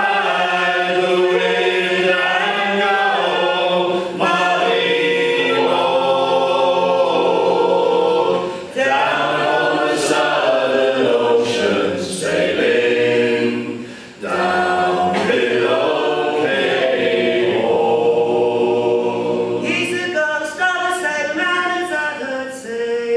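A mixed group of male and female voices singing a folk sea song a cappella in harmony, with brief gaps for breath between phrases about nine and fourteen seconds in.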